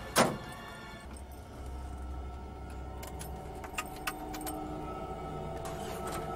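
A car door slams shut just after the start, the loudest sound here. Later come a few small metallic clicks and jingles of keys at the ignition, over background music.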